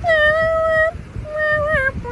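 A high voice singing two long held notes, the second sliding down at its end, over a low rumbling noise.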